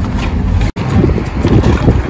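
Wind buffeting the phone's microphone with a steady low rumble, broken by a sudden instant of silence under a second in where the recording is spliced.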